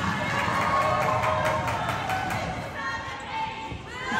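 Cheerleaders' and crowd voices in a gymnasium, with a quick run of sharp slaps and thuds between about one and two seconds in as the stunts come down onto the mat.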